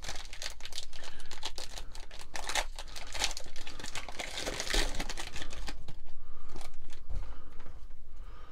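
Plastic wrapper of a 2023 Panini Mosaic football card value pack being torn open and crinkled by hand, an irregular run of crinkles and tearing.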